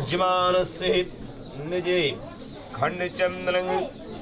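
Hindu priest chanting mantras in long, held tones, several phrases with the pitch rising and falling in arches.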